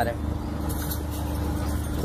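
A steady low mechanical hum with a faint constant tone, and faint brief jingling near the middle.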